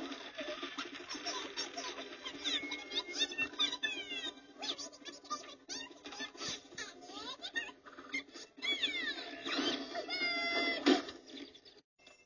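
A run of high-pitched, animal-like squeaks: many quick chirps sliding up and down in pitch, thickest and loudest shortly before the end.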